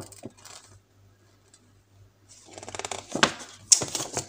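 Paper instruction leaflet being handled: a click at first, a near-quiet second or so, then a run of crackly paper rustling with a couple of sharp knocks near the end.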